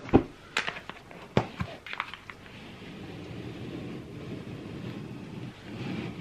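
A cardboard advent calendar box being handled: several light knocks and taps in the first two seconds, then a soft, steady shuffling as the layers of the box are moved to get at the lower tray.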